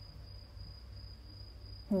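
A steady high-pitched whine over a low background hum.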